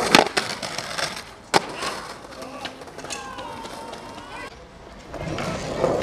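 Skateboard on concrete: two sharp board clacks, one at the start and another about a second and a half later, over the rumble of urethane wheels rolling on pavement, which swells again near the end.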